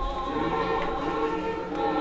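A group of voices singing together in harmony, holding long, slowly changing notes.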